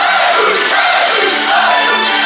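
Live idol-pop music in a club with a crowd of fans shouting along to it.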